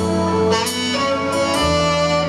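Band playing the slow instrumental intro of a ballad: sustained chords over a bass line, with a couple of cymbal-like strikes and a deeper bass note coming in near the end.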